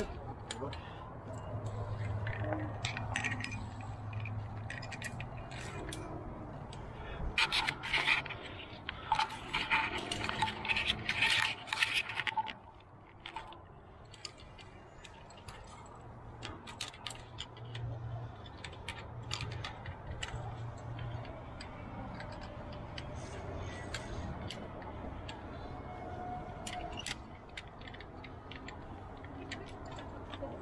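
Metal clinks and scrapes of via ferrata carabiners and lanyards against the steel safety cable, in scattered clicks with a busy run of clinking about a third of the way in.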